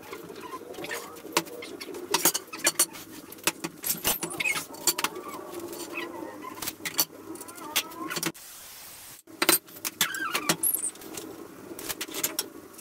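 Repeated knocks, clacks and scrapes of 2x4 lumber being handled and laid across folding sawhorses, with a short stretch of steady hiss about eight seconds in.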